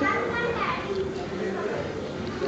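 Background voices of other people, with a child's voice calling out about half a second in, then general chatter.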